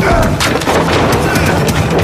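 A rapid, irregular run of loud sharp bangs, about five a second, over a low steady rumble.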